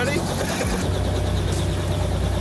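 Helicopter running on the ground with its rotor turning: a loud, steady low drone, with a fast regular beat coming in about a second in.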